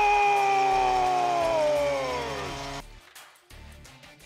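Arena goal horn blaring right after a goal, several tones sounding together as a chord. The pitch sags slowly, then drops faster before the horn cuts off about three seconds in.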